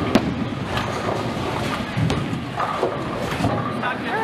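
Bowling alley din: bowling balls rolling down the wooden lanes and sharp clacks of balls and pins over crowd chatter. The loudest crack comes just after the start, and another about two seconds in.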